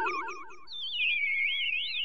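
Electronic outro sound effect: warbling synthesized tones with a fast wobble in pitch. A lower pair of tones fades out within the first half second, then a higher tone swoops down about a second in and keeps warbling.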